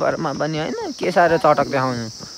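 A man's voice close to the microphone, talking in unclear words that stop just before the end, over a steady high-pitched insect drone of crickets.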